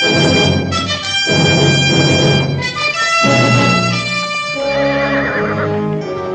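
Orchestral music led by brass, a run of loud held chords that change every second or so and ease off a little near the end.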